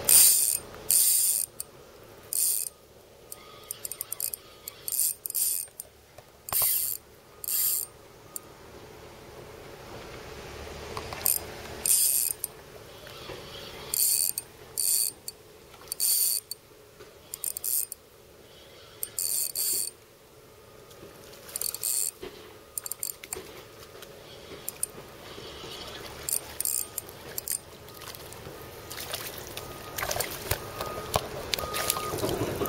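Fishing reel's drag clicking in repeated short bursts, roughly one every one to two seconds, as a hooked black bass pulls line during the fight.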